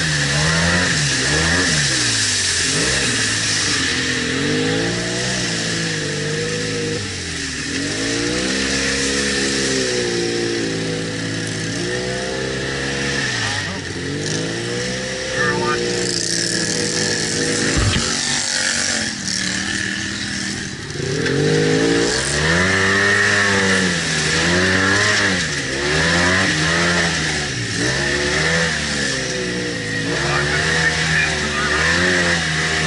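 ATV engine revving up and down over and over, its pitch climbing and dropping every second or two, with a steady high whine underneath.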